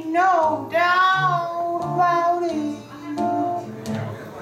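Woman singing a slow blues vocal into a microphone, holding long notes that bend in pitch, over acoustic guitar accompaniment.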